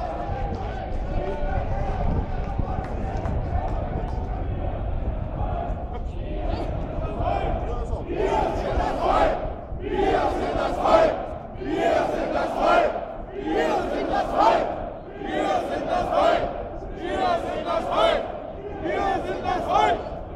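Marching crowd: a general hubbub at first, then many voices chanting a short slogan in unison, repeated about once every two seconds.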